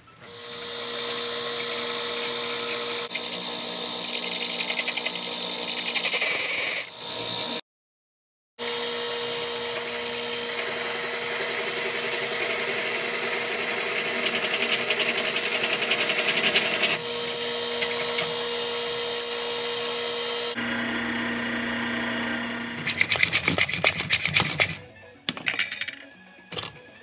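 Drill press motor running with a steady hum while its bit bores into a workpiece, the cutting loudest and hissiest in the middle stretch. A lower hum follows, then a run of rapid clicks near the end.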